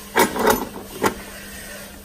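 Bread pan of a home bread maker knocking against its baking chamber as it is handled: a few sharp knocks within the first second or so.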